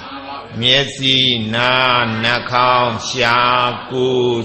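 A Buddhist monk's voice intoning a text in a chanted recitation, each phrase held on a level pitch with short breaks between phrases.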